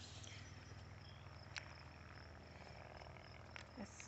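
Near silence outdoors: faint, steady, high-pitched insect chirring, with one faint click about a second and a half in.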